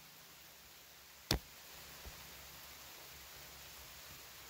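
Faint steady hiss with one sharp, short click about a second and a quarter in, and a much fainter tick about two seconds in.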